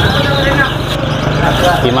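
Motorcycle engine running as it rides past close by, a steady low hum, with voices in the background.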